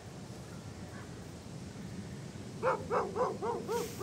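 A dog barking in a quick run of about six short barks, roughly four a second, starting a little past halfway.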